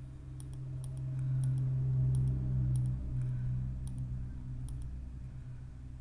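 Computer mouse button clicked repeatedly at an irregular pace, about a dozen faint clicks, while painting with the clone tool. A steady low hum runs underneath.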